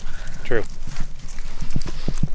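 Footsteps of people walking at an easy pace, a steady run of soft low thuds several times a second, with a single spoken word about half a second in.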